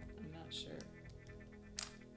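Background music, with a single sharp click near the end as a puzzle piece is set down into its frame.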